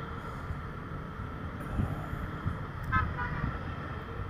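TVS Apache RTR motorcycle riding at road speed: a steady low engine and wind rumble. A short horn toot comes about three seconds in.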